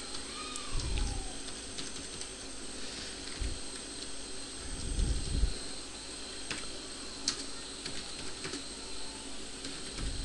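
Sparse, irregular keystrokes on a computer keyboard, over a steady faint hum. A few soft low thumps come about a second in and around five seconds in.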